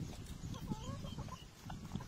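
Drinking noisily from a bowl: low slurping and gulping throughout. An animal's short, wavering call sounds faintly about half a second in.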